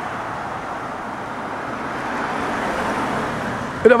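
Steady noise of road traffic, swelling slightly a little past halfway, as a car goes by.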